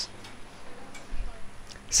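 A few faint clicks and taps over quiet room noise and a low steady hum.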